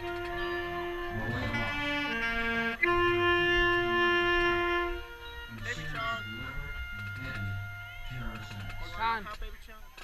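Marching band brass playing sustained chords, building to a loud held chord that cuts off about five seconds in. Voices follow after the chord.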